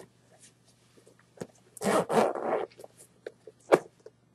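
Zipper on a Nike NSW Gaiter Boot's gaiter being pulled open: one short rasp about two seconds in, then a sharp click near the end.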